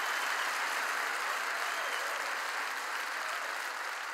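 A large congregation applauding, a steady dense clapping that eases off slightly toward the end.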